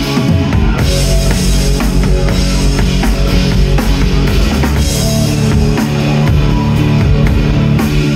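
Live rock band playing an instrumental passage: electric guitar on a Fender Stratocaster, bass guitar and a drum kit with steady kick, snare and cymbal hits, loud and without vocals.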